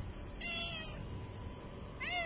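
Domestic cat meowing once, a short, slightly falling call about half a second in.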